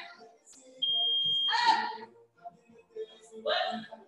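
A digital interval timer gives one steady, high-pitched beep lasting under a second, about a second in. The beep marks the end of a timed work interval.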